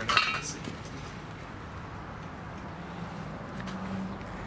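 A steel crucible and lifting shank clinking and clanking against each other and the drum furnace rim, with a few metallic strikes and a short ring in the first half second. A steady low hum runs underneath.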